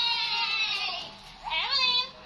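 A very high-pitched voice: a long held squeal that fades out about a second in, then a short squeal rising in pitch near the end.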